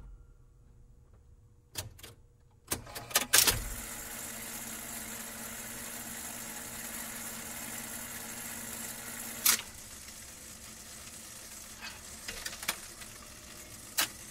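Jukebox record-change mechanism working between songs: a few clicks and clunks, then a steady whirring hiss for about five seconds that drops in level with a sharp click, followed by a few light clicks near the end.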